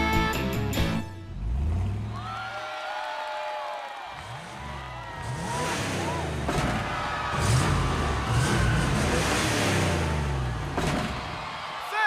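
Cartoon sound effects of a small truck's engine revving up and down as it launches and flips through the air, with a rushing noise in the middle. Music at the start cuts off about a second in.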